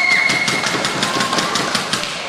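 A badminton shoe squeaks on the court floor in one high held squeak that ends just after the start, over a fast, even run of sharp clicks about six a second.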